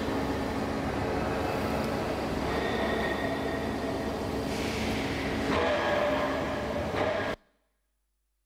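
Factory noise from a seamless steel tube mill: a steady machinery rumble and hiss with a few faint held tones, cutting off abruptly near the end.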